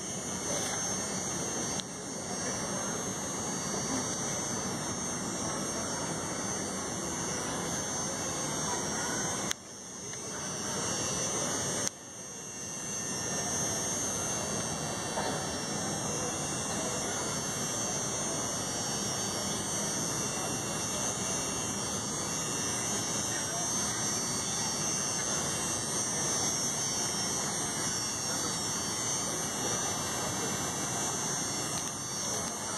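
Indistinct crowd chatter, a steady hubbub of many voices with no clear words. The sound drops out briefly twice, about ten and twelve seconds in, then comes back.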